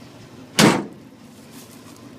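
The cab door of a 1969 International Harvester 1300 truck slammed shut once, about half a second in, over the steady low hum of its idling engine.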